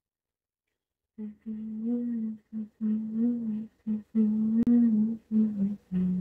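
A woman humming a tune in short phrases with gentle rises and falls in pitch, starting a little over a second in. A single brief click sounds partway through.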